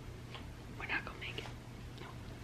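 A woman whispering a few breathy words under her breath during a labour contraction, over a low steady room hum.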